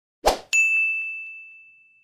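A brief rush of noise, then a single bright ding that rings on one high note and fades away over about a second and a half: an animated-intro sound effect.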